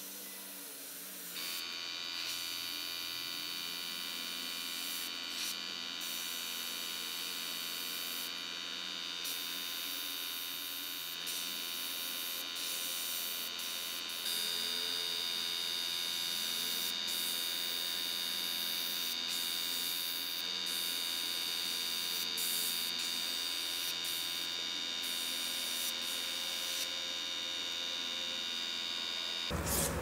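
Small airbrush compressor's electric motor running with a steady hum and whine, switching on about a second and a half in and getting a little louder about halfway through.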